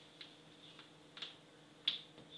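Three faint, sharp clicks, the last one near the end the loudest, from a pen and ruler being handled and set down on pattern paper, over a faint steady hum.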